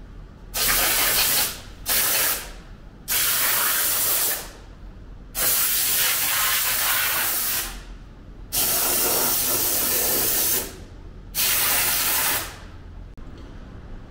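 Aerosol spray can hissing in six separate bursts, each about one to two seconds long, with short pauses between.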